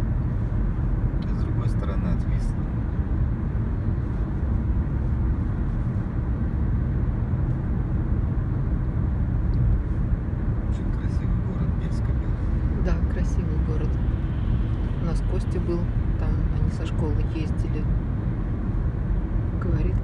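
Steady road and engine noise of a car travelling at highway speed, heard from inside the cabin: a constant low rumble with no sudden events.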